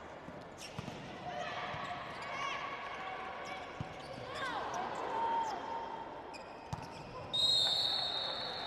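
Volleyball rally on an indoor court: the ball is struck with three sharp thumps and sneakers squeak on the floor. Near the end a referee's whistle blows one loud steady blast, ending the rally.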